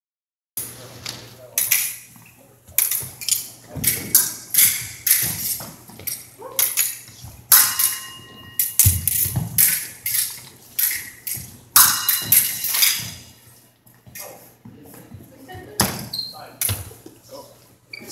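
An épée bout: an irregular run of footsteps, stamps and lunges on a hardwood gym floor, mixed with clicks and clinks of the épée blades meeting, with a steady low hum underneath. A short ringing tone sounds a little past the middle.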